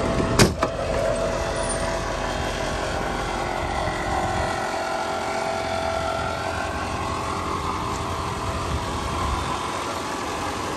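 The ambulance box's side door on a Chevrolet Kodiak is pushed shut, giving two sharp knocks about half a second in as it slams and latches. Over a steady hum, the truck's engine is idling.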